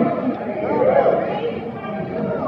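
Concert audience chatter: several voices talking over one another close to the recording.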